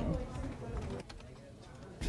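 Typing on a computer keyboard: a scatter of quick key clicks that fades out about a second in.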